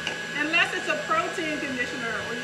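A woman's voice talking over a steady thin high whine and low hum.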